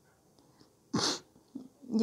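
A single short, sharp breath close to the microphone about a second in, with quiet around it.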